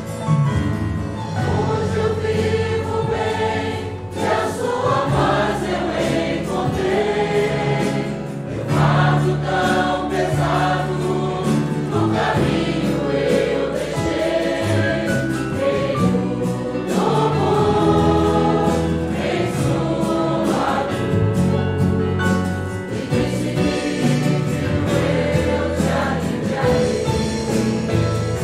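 Choir singing a Portuguese-language gospel hymn with instrumental accompaniment and a steady bass line.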